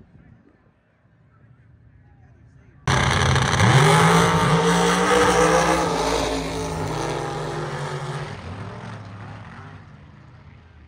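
Drag car engines at full throttle, starting suddenly about three seconds in, rising briefly in pitch as they launch, then fading away as they run down the strip.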